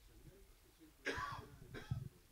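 A person coughing twice, the first cough about a second in and the second just before the end.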